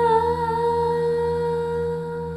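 Archtop hollow-body electric guitar letting a note ring and sustain, its pitch wavering slightly just after the start, over a steady low drone.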